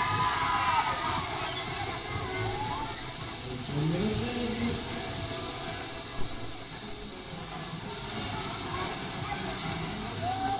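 Children's rotating fairground ride running: a steady, high-pitched squealing whine from its machinery holds from about two seconds in until about eight seconds, over a continuous hiss.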